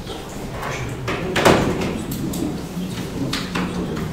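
Scattered knocks and rustles of people handling things at a meeting table, the loudest a sharp knock about a second and a half in.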